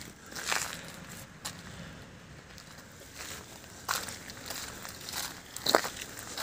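Footsteps on wet, gritty pavement: irregular scuffs and clicks, with one sharper click near the end.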